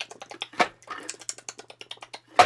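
A rapid, irregular series of light clicks and ticks.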